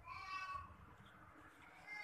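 Faint, drawn-out high-pitched voice-like calls: one in the first second and another starting just before the end.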